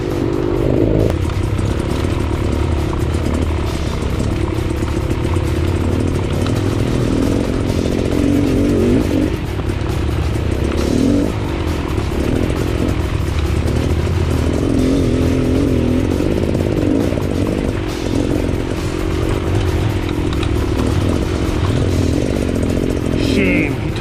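Dirt bike engine running on a rough singletrack climb, its revs rising and falling with the throttle.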